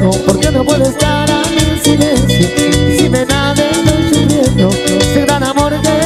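Live Latin dance band music: a melodic lead line wavering over a steady, driving percussion beat and bass.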